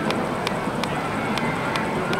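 Roller coaster train with Ferrari-style cars running along its steel track: a steady rushing noise with a sharp click two or three times a second.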